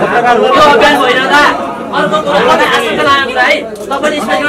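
Several people talking loudly over one another, a jumble of overlapping voices in a crowded room.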